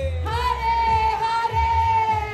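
A woman singing kirtan, holding one long note that slowly falls in pitch, over a low, steady drum beat.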